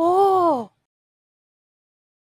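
A woman's short drawn-out "oooh" exclamation, its pitch rising and then falling, lasting about two-thirds of a second.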